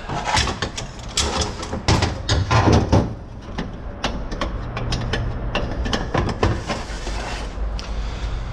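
Metal clicks and clanks as a snap ring is worked into its groove in a Chrysler 62TE transmission input drum with snap-ring pliers, then scattered knocks as the drum is taken off a bench snap press and its lever handle is moved.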